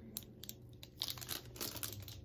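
Foil candy wrapper of a Russell Stover marshmallow heart crinkling in several short, irregular bursts as it is handled and squeezed close to the microphone.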